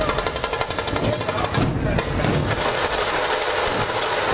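A large troupe of dhol barrel drums played together in a loud, fast, continuous rhythm of rapid strikes.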